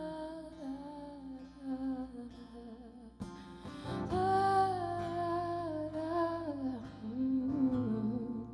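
A woman singing a wordless vocal line live over acoustic guitar, long held notes sliding between pitches; a guitar chord is strummed about three seconds in and rings on under the voice.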